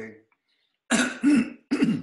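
A man clearing his throat in three short, loud bursts, starting about a second in.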